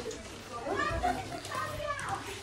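Young girls' voices, chattering and calling out as they play.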